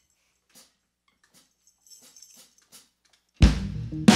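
A few faint small noises in near silence, then near the end a live indie-pop band starts a song all at once, with a loud low hit of kick drum and bass under sustained keyboard or bass notes.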